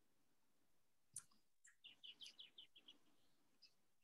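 Faint birds chirping in the background: one sharp call about a second in, then a quick run of about eight short, high chirps, and a single chirp near the end.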